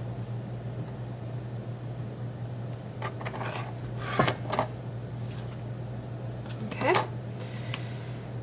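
A Fiskars sliding paper trimmer's cutting head is drawn along its plastic rail through a paper label, giving short scrapes and knocks around three to four and a half seconds in. The cut paper is handled with a brief rustle and clicks near the end. A low steady hum sits underneath.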